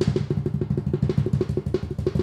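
A rapid drum roll, about ten even strokes a second, building suspense before a reveal.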